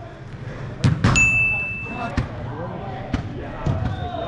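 Soccer ball thuds: a hard strike about a second in, followed by a high steady tone lasting about a second, then a few lighter knocks of the ball on the turf and boards.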